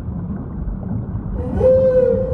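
A whale call over a steady low rumble of ocean noise: about one and a half seconds in, a clear mid-pitched moan starts with a short upward slide, then holds one steady note.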